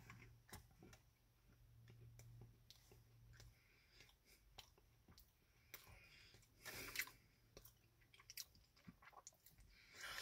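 A person faintly chewing a bite of a pretzel-crust Pop-Tart, with small scattered crunches and mouth clicks; a slightly louder mouth sound comes about seven seconds in.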